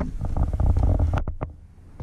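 Lionel O-gauge boxcar's metal wheels rolling on three-rail steel track: a low rumble with rapid light clicks, dropping away about one and a half seconds in.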